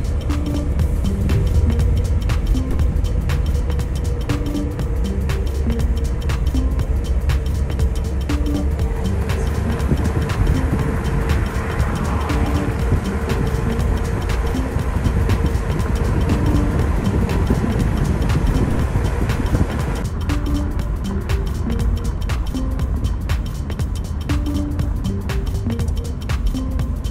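Background music with short melodic notes and a regular beat, over the steady low rumble of a car driving on the highway.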